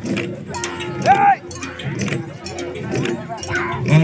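Long Garo dama drums being beaten by a line of dancers, mixed with crowd voices. About a second in comes a loud rising-and-falling call.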